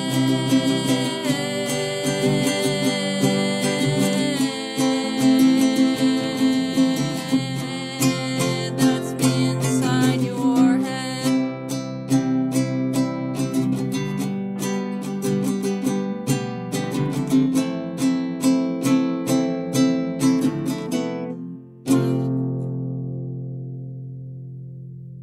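Strummed guitar playing an instrumental passage with a steady beat. After a brief break near the end it hits one final chord, which rings out and slowly fades.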